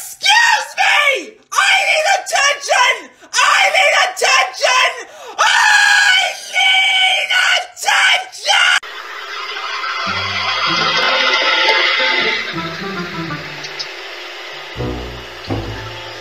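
A puppy barking and yelping loudly in high, shrill, pitch-bending cries, one after another, for about nine seconds before stopping.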